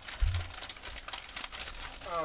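Hands rustling and handling a fabric drawstring sack as it is opened, with a scatter of small clicks and crinkles. One dull thump about a quarter second in is the loudest sound.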